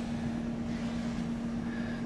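Steady background hum: one unchanging droning tone over a faint hiss.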